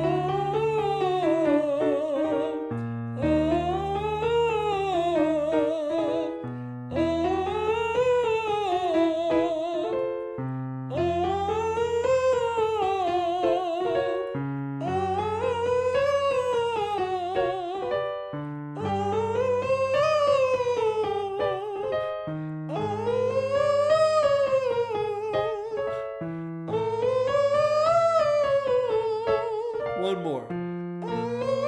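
Man singing in a soft, distant-sounding falsetto (voce di lontano), running a short scale up and back down over piano chords. The pattern repeats about every four seconds, each time a step higher, climbing into the top of his falsetto, with vibrato on each closing note.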